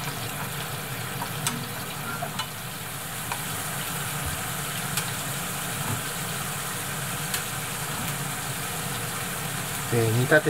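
Nanban vinegar boiling with sliced okra in a frying pan: a steady bubbling hiss with a few small pops. It is being boiled to cook off the alcohol in the mirin.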